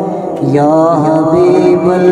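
A man singing a naat solo into a microphone: a short break for breath near the start, then a long held note with wavering ornamental turns.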